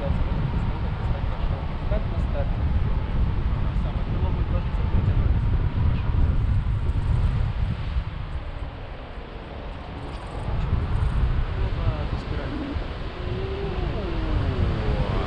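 Airflow buffeting an action camera's microphone on a selfie stick during a tandem paraglider flight: a loud, steady low rumble of wind noise that eases briefly a little past the middle.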